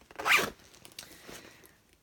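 A Dooney & Bourke handbag's zipper pulled in one quick stroke of about half a second, right at the start, followed by a few faint handling ticks.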